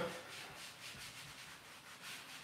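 Whiteboard eraser being rubbed back and forth across a dry-erase board in quick repeated strokes, a faint scrubbing hiss.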